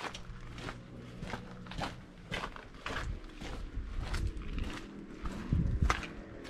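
Footsteps of a person walking over grassy ground, about three steps a second, with a louder low rumble shortly before the end.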